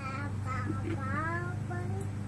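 A toddler's soft sing-song vocalizing: a few short notes that glide up and down in pitch.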